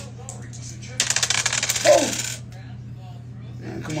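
Dice rattling in a hand, a quick run of hard clicks lasting about a second and a half, as a shooter shakes them before a throw in a craps game.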